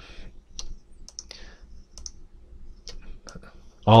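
A computer mouse clicking several times at uneven intervals while items in an on-screen list are selected.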